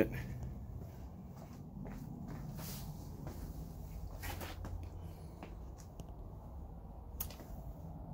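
Faint footsteps and handling clicks, a few scattered knocks, over a low steady hum.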